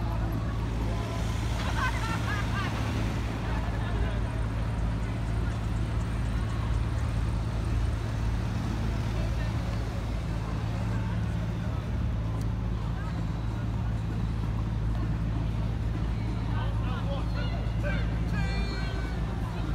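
City street ambience: a steady low traffic rumble, with voices of passers-by heard briefly about two seconds in and again near the end.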